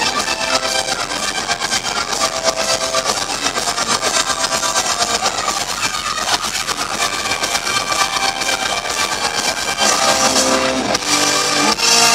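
Rock band playing live at full volume: electric guitar over keyboards and drums. About ten seconds in, the playing changes to held notes.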